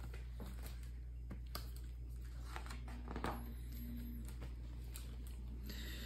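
Faint rustling and light handling clicks of a hardcover picture book's paper pages being turned, over a steady low hum.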